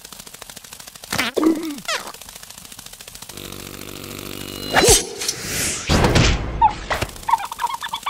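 Cartoon sound effects: short squeaky, gliding character vocal noises, then a low buzzing drone for a couple of seconds, ending in a sudden whoosh and a flurry of comic knocks and bangs.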